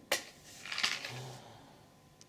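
A candle being lit: a sharp click, then a short scraping hiss just under a second in.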